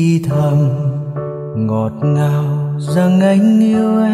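Slow pop ballad: a man singing long held notes over keyboard accompaniment.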